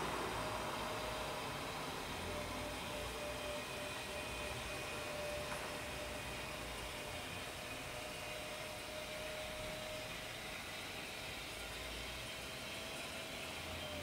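Electric motor of a motorised TV wall bracket whirring steadily with a faint, even whine as it swings the TV and its speaker from an angled position back flat against the wall.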